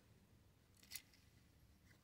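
Near silence with a single soft click about a second in, from plastic press-on nails being handled in a clear plastic organizer tray.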